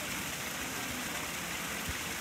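Steady rush of flowing water at a koi pond, with a brief low bump near the end.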